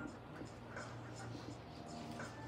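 Small paintbrush scratching and dabbing oil paint onto a stretched canvas in short repeated strokes, about three a second, over faint steady background tones.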